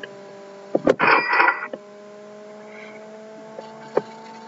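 A pause in speech, with a steady electrical hum in the recording. There is a sharp click and a short noisy burst about a second in, and faint clicks near the end.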